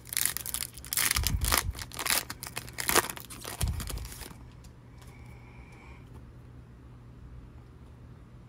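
Foil trading-card pack wrapper being torn open and crinkled by hand: a run of sharp crackling rustles that stops about four seconds in.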